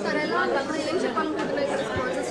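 Indistinct chatter: several people talking at once, voices overlapping with no single clear speaker.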